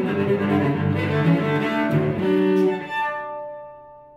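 Solo cello playing bowed notes loudly, then a final note left ringing and fading away from about three seconds in, as the bow comes off the strings.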